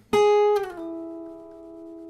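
Acoustic guitar: a single note is picked once and slid down the string without a second pick, a legato slide from the ninth fret to the fifth. The pitch drops about half a second in, and the lower note rings on and slowly fades.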